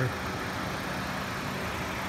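2016 Honda Civic Touring's turbocharged four-cylinder engine idling: a steady, even hum that does not change.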